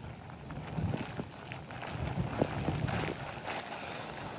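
Tropical-storm wind gusting against an outdoor field microphone, heard as an uneven, buffeting low rumble.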